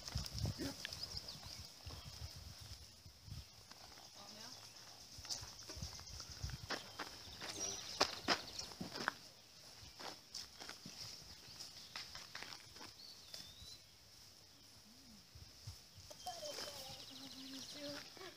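Saddled horses shifting and stepping on grass while riders dismount, with scattered soft knocks and clicks of hooves and tack. A faint steady high-pitched whine sits underneath.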